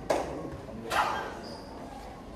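Two sharp snaps from a martial artist's strikes during a Five Ancestor Boxing form, about a second apart, the second trailing off in the hall.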